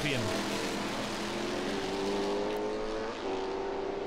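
Formula 5000 racing car's V8 engine at full throttle, its note climbing slowly as the car accelerates, with a short break in the note about three seconds in.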